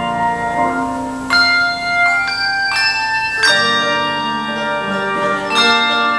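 Handbell choir playing a piece: chords of bells struck every second or so and left to ring on, several pitches sounding together.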